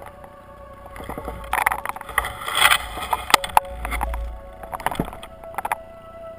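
Underwater noise picked up by a diver's camera: a rush of moving water and bubbles, strongest about two to three seconds in, with scattered sharp clicks and knocks. Soft ambient music with held notes runs faintly underneath.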